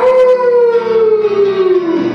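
A long, wolf-like howl sung by the singer: one drawn-out note that starts suddenly and slides slowly down in pitch over about two seconds.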